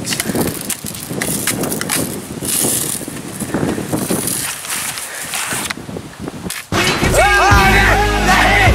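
Rustling, clicking handling noise as a pump BB rifle is worked and aimed. About seven seconds in, this cuts off and a rock song with singing starts.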